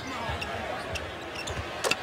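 A basketball being dribbled on a hardwood court: a few dull bounces over steady arena background noise, with one sharp smack near the end.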